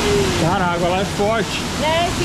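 Steady rush of a small waterfall pouring into a rock pool, with a man's voice over it for much of the time.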